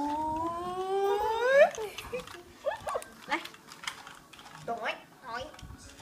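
Baby vocalizing: one long squeal that climbs slowly in pitch and then shoots up at its loudest point, followed by a few short rising squeaks and coos.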